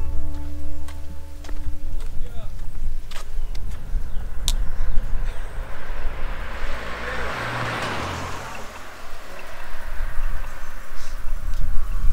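Background music fading out in the first second or two, then roadside traffic noise: one vehicle passes, swelling and falling away, loudest about seven to eight seconds in.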